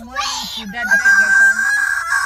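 A person's loud, high-pitched vocal cry: a breathy burst, then a shrill note held steady for over a second that slides down in pitch as it ends.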